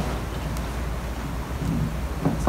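Low, steady room rumble in a large hall, with a faint click about half a second in and faint voices near the end.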